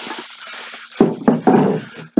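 Groceries being handled out of a plastic shopping bag: a sharp knock about a second in, followed by more handling noise.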